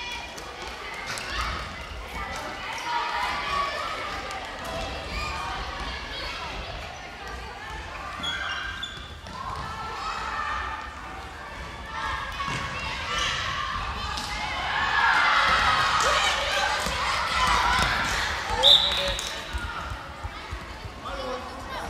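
Large sports hall during a children's dodgeball game: many children's voices and shouts echoing through the hall, with a ball bouncing and thudding on the floor. A brief shrill whistle-like tone sounds near the end.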